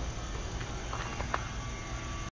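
Steady outdoor background noise, with two faint clicks about a second in.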